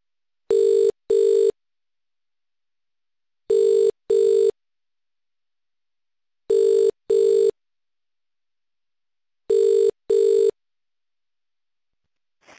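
Telephone ringback tone on the calling line: four double rings, each a pair of short low steady tones, repeating every three seconds while the call rings through unanswered. The rhythm matches the Indian ringback cadence.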